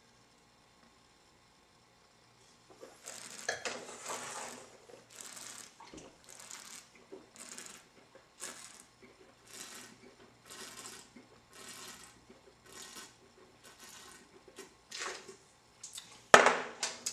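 Wine being slurped and swished in the mouth while tasting, a run of short, faint, wet hissing draws about once a second, with air pulled through the wine to aerate it. The run starts a couple of seconds in after a quiet pause.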